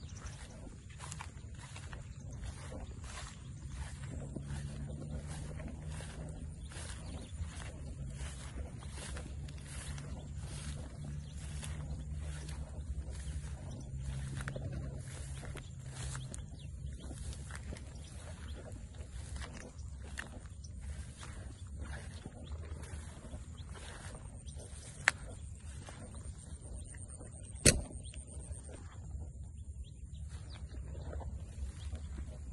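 Footsteps swishing through tall wet grass at a steady walking pace, about one and a half steps a second, over a low steady hum. Two sharp clicks sound near the end.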